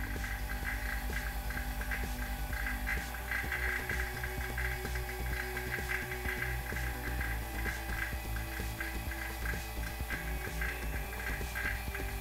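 Vacuum pump running steadily under the chamber, with a low hum and a fast, even throbbing, holding a vacuum on oobleck that is boiling.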